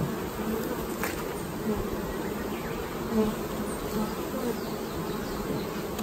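Honeybees from an opened hive buzzing in a steady, dense hum, with a light click about a second in.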